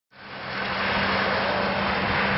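Car driving on a wet, slushy road: a steady hiss of tyres on wet tarmac with a low engine hum under it, fading in over the first half second.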